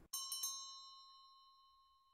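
Subscribe-button sound effect: three quick clicks, then a single bell ding that rings on and slowly fades.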